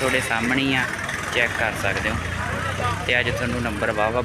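A diesel tractor engine idling steadily, with people talking over it.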